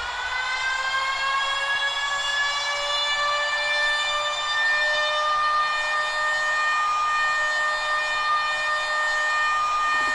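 A beatless breakdown in an electronic dance mix: one sustained siren-like tone, rich in overtones, slides slowly upward over the first few seconds and then holds steady, with no drums under it.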